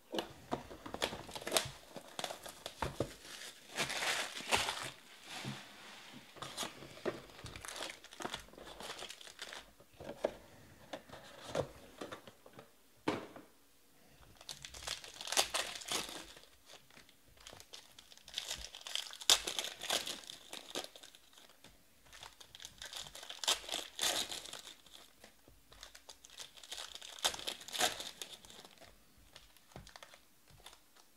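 Foil trading-card packs of 2020 Panini Prizm Baseball being handled and torn open. The sound is repeated bursts of crinkling foil every few seconds, with small clicks of cards being handled in between.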